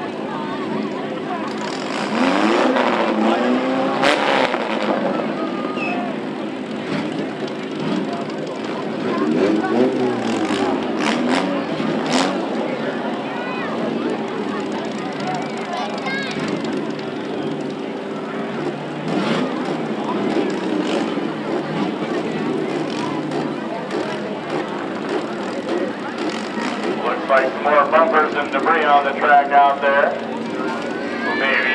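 Demolition derby cars' engines running and revving, with a few sharp bangs of cars crashing into each other, over the voices of a grandstand crowd. A louder rapid warbling sound comes near the end.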